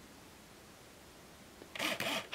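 Faint room tone, then near the end a short, sudden burst of small-camera mechanism noise: the Olympus Infinity Stylus Zoom 70's shutter and lens mechanism firing as the self-timer cycle completes.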